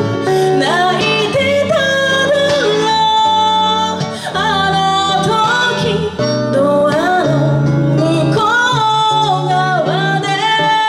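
A woman sings a melody into a microphone over guitar accompaniment in a live amplified performance, holding notes with slides and vibrato.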